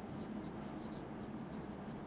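Faint strokes of a marker pen writing words on a whiteboard.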